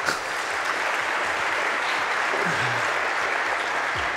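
Large audience applauding steadily, a continuous wash of clapping.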